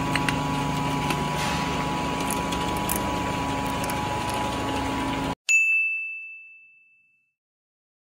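Labeling machine running with a steady hum and small scattered clicks, which cuts off suddenly about five seconds in. Then a single bright chime rings out and fades away over about a second and a half.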